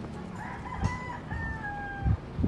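A rooster crowing once: a drawn-out call whose last note drops slightly in pitch. Low thumps of footsteps on wooden railway sleepers sound beneath it.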